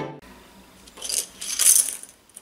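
Several wooden popsicle sticks dropped into a pile on a cutting mat, a light clatter of wood on wood starting about a second in and lasting nearly a second.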